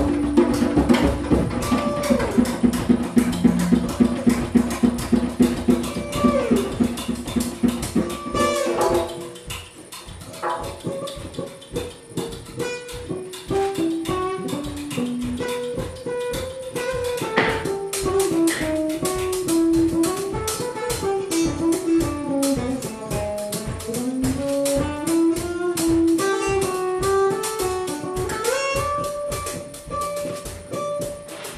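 Live improvised band music with drums and percussion and plucked strings. For the first nine seconds or so it plays dense and rhythmic. Then it drops quieter, and a single melodic line wanders up and down over a lighter pulse.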